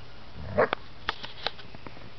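Puppies playing in snow: a brief sound from one of the dogs about half a second in, the loudest thing heard, followed by several sharp clicks.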